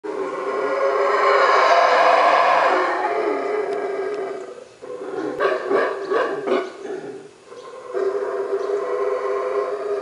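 Howler monkeys howling. A loud, drawn-out roar runs for the first four seconds or so, then comes a choppier run of short pulsed calls. After a brief pause about seven and a half seconds in, a steady howl starts again from about eight seconds.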